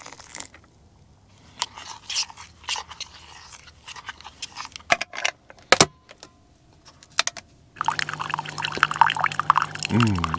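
A single-serve coffee maker is handled with a series of small clicks and knocks, including one sharp click about six seconds in. From about eight seconds the machine runs with a steady hum as hot coffee streams and gurgles into a mug.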